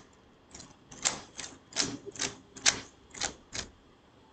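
Typing on a keyboard: about nine irregular key clicks over three seconds, then stopping.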